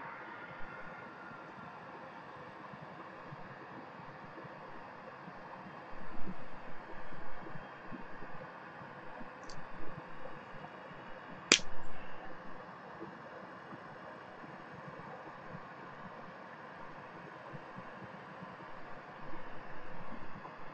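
Steady hum of a fume extractor fan, with bursts of clicking and scraping as side cutters are worked against the casing of a small component, and one sharp snap a little past halfway.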